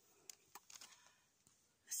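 Near silence, with a few faint, soft rustles or clicks in the first second; a voice starts speaking just before the end.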